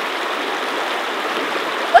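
Steady rushing of a shallow river running over rocks and stones.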